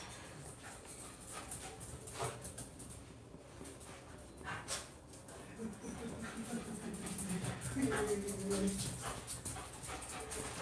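A dog whimpering and whining faintly, a little louder in the last few seconds.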